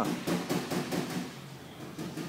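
A quick run of sharp knocks or taps, about five a second, dying away after a little over a second.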